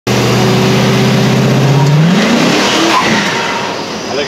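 Pickup truck engine running loud at a steady pitch, then revving up sharply about two seconds in before breaking into a rough noise that fades. The rev flare goes with a transmission gear breaking.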